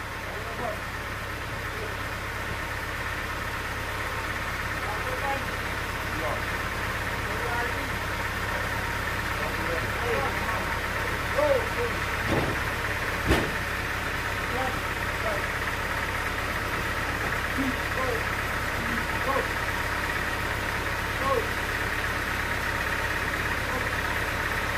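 Band sawmill's drive running steadily without load while a heavy log is pushed into place on the carriage. Two sharp knocks come about halfway through.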